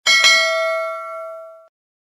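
Bell 'ding' sound effect for a notification bell icon: struck twice in quick succession, then ringing out with bright overtones for about a second and a half before it cuts off.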